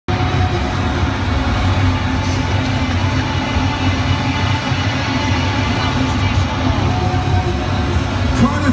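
Live rock concert sound heard from within an arena crowd: a loud, steady low rumble of music from the PA, mixed with crowd noise.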